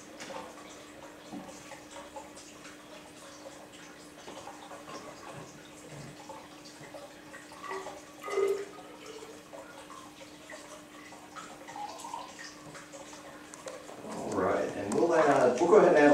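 Silver nitrate solution being poured slowly from a beaker into a glass graduated cylinder: a faint trickle and drips of liquid, with a steady low hum underneath.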